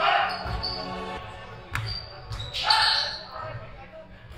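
Basketballs bouncing on a hardwood gym floor: several separate thuds and a sharp knock, over faint voices in the large hall.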